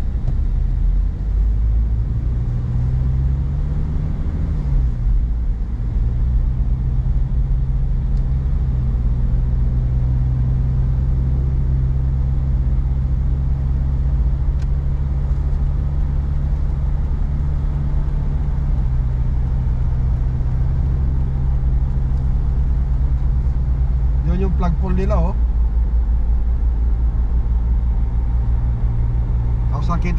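Car engine and road noise heard from inside the cabin: a steady low rumble, the engine note rising in the first few seconds as the car pulls away from traffic, then holding level at cruising speed.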